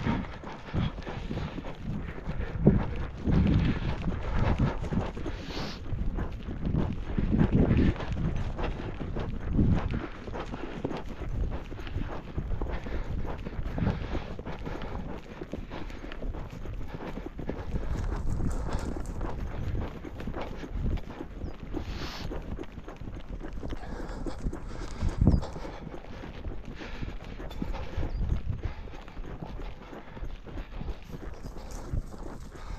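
Hoofbeats of a ridden three-year-old gelding moving over dry grass and a dirt track: a run of irregular footfalls.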